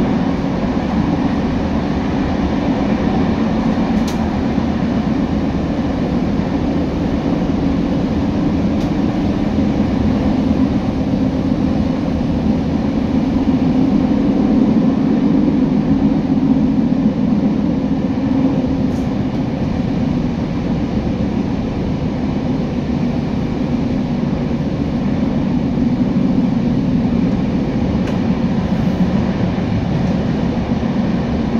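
Regional passenger train heard from inside the carriage, running steadily through a tunnel: a loud, even rumble of wheels and running gear that holds level throughout.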